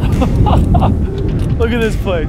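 Wind buffeting the camera's microphone, a heavy low rumble, with a man's excited voice breaking in twice.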